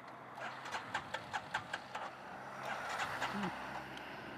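Quiet lane beside a stalled motorcycle with its engine off: a quick run of light clicks, then a car approaching and going past.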